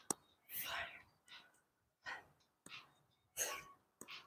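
A woman's short, forceful breaths, a strong exhale about every second and a half with smaller breaths between, in time with the effort of lizard push-ups.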